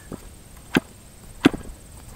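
Super Tigre G40 two-stroke glow engine being primed: the propeller is flicked over by hand with the carburetor intake choked, giving short sharp snaps, two loud ones less than a second apart after a fainter one.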